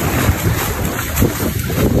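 Wind buffeting the microphone over the rushing wash of surf around the feet.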